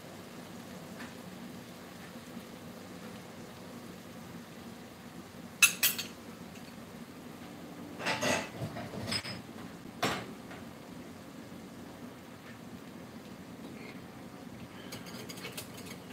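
Metal spoon clinking against a glass mixing bowl: a quick cluster of ringing clinks near the middle, then a few duller knocks over the next few seconds, with quiet room tone in between.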